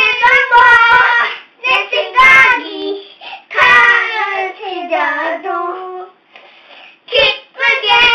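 Two young children singing a song together, without accompaniment, in short phrases with brief pauses between them.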